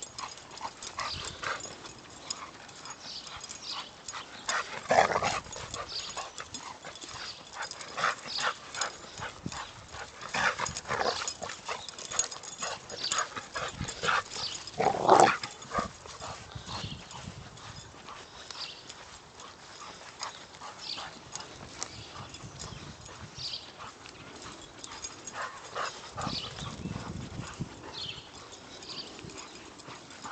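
A dog running and playing on grass: quick scattered rustling patter from its paws and its breath, with two louder sounds about five and fifteen seconds in.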